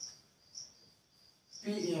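Faint, high-pitched insect chirping, a regular pulse about four or five times a second, over an otherwise quiet room. A man's voice comes in near the end.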